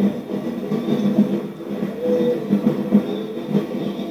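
Drum-led percussion music of a dance group in a street parade, beating a steady rhythm, heard through a television's speaker.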